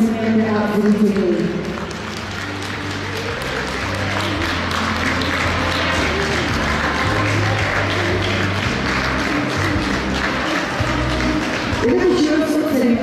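Ballroom dance music ends within the first two seconds, then the audience applauds steadily.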